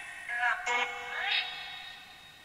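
Necrophonic spirit-box app putting out choppy, synthetic-sounding voice fragments soaked in echo. There are a couple of overlapping bursts in the first second and a half, each trailing off in reverb.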